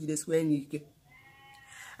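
A woman speaking for the first part, then a faint, drawn-out call with a steady pitch in the background near the end.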